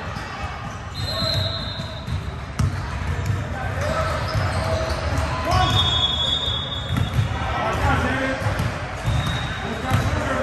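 A basketball bouncing on a hardwood gym floor in a reverberant hall, over the background chatter of players and spectators. A few brief high-pitched squeaks come through.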